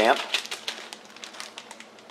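Light clicking and crinkling of thin plastic, a disposable water bottle and a zip-top bag handled as water is poured into the bag, in a quick irregular run of small clicks.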